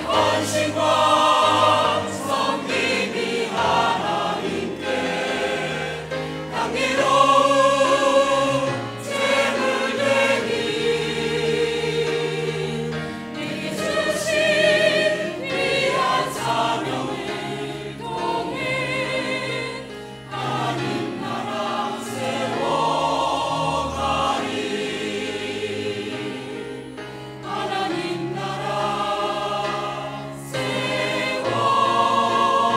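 Mixed church choir of men's and women's voices singing a Korean sacred anthem in full harmony, with piano and organ accompaniment.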